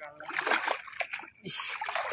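Water splashing and sloshing around a person standing waist-deep in a river while handling a fishing net, with a sharper splash about one and a half seconds in.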